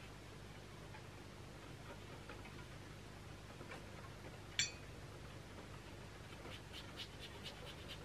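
Faint, irregular light tapping of rain on the windows, with one sharp click about halfway through and a quick run of small taps near the end.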